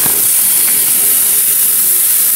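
Raw lamb steaks sizzling as they are laid on a hot barbecue grill grate: a steady, loud hiss.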